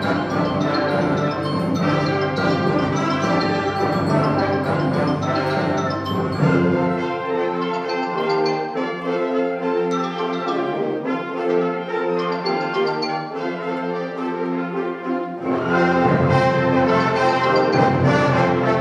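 Concert wind band playing: full band with tubas and low brass, then about seven seconds in the bass drops out and a lighter texture of higher woodwinds and brass carries on, before the full band with low brass comes back in near the end.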